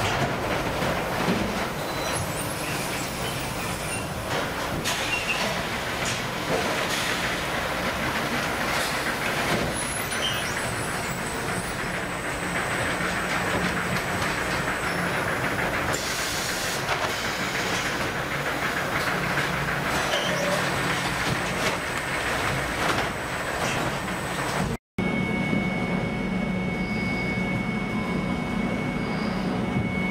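Automated sack-palletizing machinery running: a steady mechanical din from conveyors and the stacking gripper, with scattered clanks and hisses. Near the end the sound cuts to a steadier machine hum with a thin high whine.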